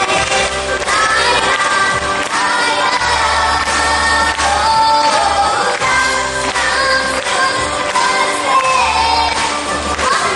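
A young girl sings a Bulgarian pop song into a microphone over a recorded pop backing track with a steady, pulsing bass line.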